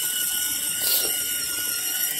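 Electric drive motor and gearbox of a child's battery-powered ride-on toy Mercedes GL450 whining steadily as the car drives along, its plastic wheels rolling on asphalt.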